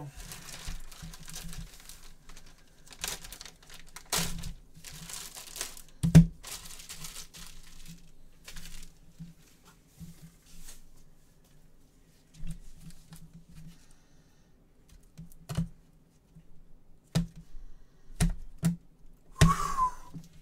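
Red plastic wrapper being torn and crumpled by a gloved hand off a trading-card box, crinkling in irregular bursts for about ten seconds, loudest about six seconds in. After that, a few separate sharp clicks and taps as the box contents are handled.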